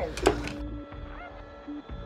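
A clunk as a rotary desk telephone's handset is lifted, followed by a single steady low tone held for about a second and a half.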